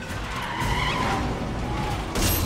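A heavy car's tyres screeching as it slides through a turn on pavement, with the engine running under it. The squeal wavers in pitch and is strongest from about half a second to a second and a half in.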